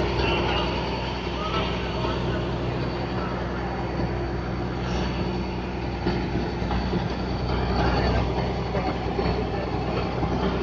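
A river ferry's engine running steadily under way, a constant drone with water rushing past the hull.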